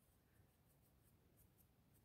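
Near silence, with faint soft brushing as a makeup brush dabs blush onto crocheted yarn.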